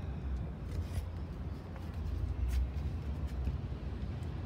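Wind buffeting the microphone: a steady low rumble, with a couple of faint clicks.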